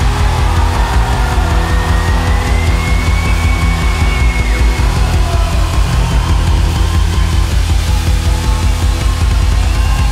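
A live rock band playing an instrumental passage at full volume: a drum kit hit hard and fast over heavy bass and electric guitars, with a held high note rising slightly in the first few seconds.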